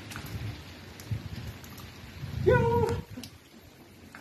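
Steady hiss with low rumbling and a few faint taps, and a man's short shout of 'Yo' about halfway through, the loudest sound.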